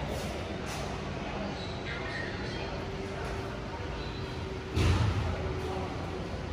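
Schindler 5500 lift's automatic doors sliding closed, with a faint steady hum. A single loud thump comes about five seconds in.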